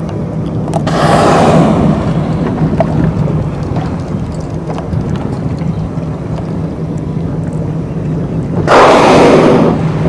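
Blue whale blowing at the surface: loud rushing exhalations, one about a second in and a louder one near the end, over the steady hum of the boat's idling engine.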